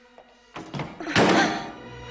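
A few light knocks about half a second in, then a loud heavy thunk a little after one second that rings off, over quiet, tense film music with a low held tone.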